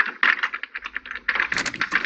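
A door lock being worked at: a rapid run of small clicks and rattles, about ten a second.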